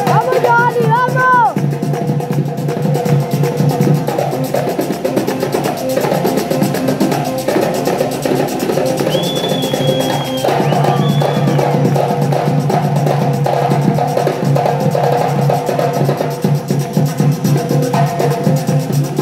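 A vallenato-style trio playing live: a button accordion carrying the melody over a small hand drum held between the knees and a scraped stick instrument, in a steady rhythm. A high accordion note is held for a couple of seconds near the middle.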